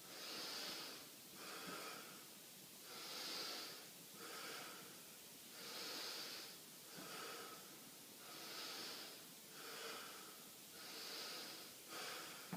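A man breathing deeply and evenly through his nose while winded from jumping jacks: about five slow in-and-out breaths, each a soft rush of air.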